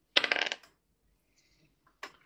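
A die rolled onto a tabletop: a brief clatter of quick clicks lasting about half a second.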